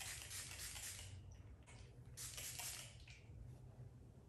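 Faint hiss of a trigger spray bottle misting 70% alcohol onto a car mirror cap: several short sprays in the first second, a weaker one, then another burst just after two seconds in.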